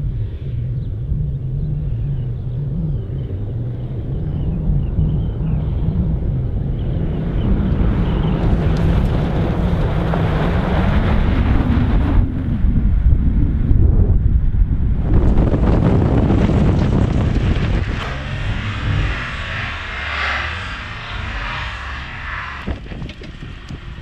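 Suzuki Grand Vitara driving on a loose gravel road and braking hard with ABS engaged: engine and tyre noise on gravel, growing louder toward the middle and then easing off, with wind on the microphone.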